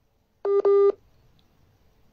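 A phone's electronic beep about half a second in: two short back-to-back tones at one steady pitch. It sounds as the call cuts off through a network breakdown.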